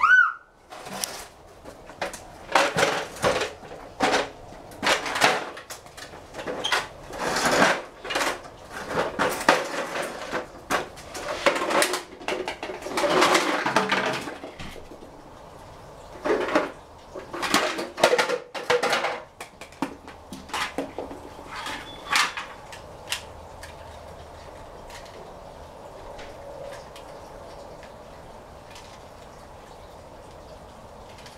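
Hard plastic toys clattering and knocking on a ceramic tile floor as a toddler handles and tips them out, in repeated bursts through roughly the first twenty seconds.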